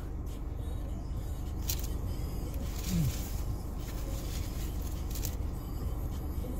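Steady low engine hum inside a car cabin, with a few short soft noises of eating a hot dog and a brief low 'mm' from the eater about three seconds in.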